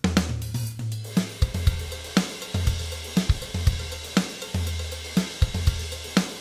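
Software drum kit beat playing through Logic Pro's Note Repeater MIDI effect, its dotted-eighth repeats transposed onto other drum notes. A crash cymbal washes all the way through over the hits, with deep held low notes under them.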